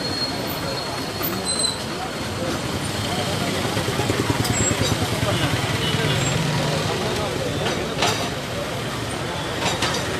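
Crowd of protesters, many voices talking and shouting at once in a dense, continuous din, with a sharp knock about eight seconds in.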